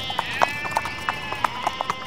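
Cartoon sound effects: a held high tone with a scatter of light, quick clip-clop knocks.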